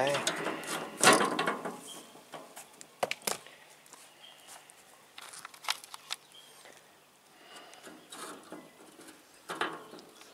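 Scattered sharp clicks and knocks of metal utensils being handled at a smoker grill, the loudest about a second in, with a few more later.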